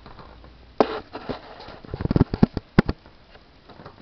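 Handling noise from a handheld camcorder being moved and set down: a knock about a second in, a quick cluster of clicks and knocks around two seconds, and a sharp click near three, with soft rustling between.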